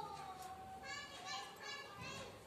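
A child's high-pitched voice in the background: one drawn-out call, then a few short spoken sounds around the middle.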